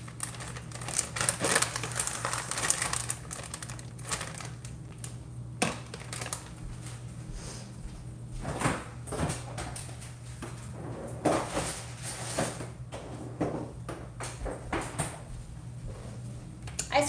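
Plastic zip bag crinkling as it is handled and sealed, followed by scattered knocks and clicks of kitchen items being put away, over a steady low hum.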